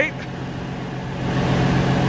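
Engine idling steadily with a low hum, under a rushing noise that grows louder in the second half.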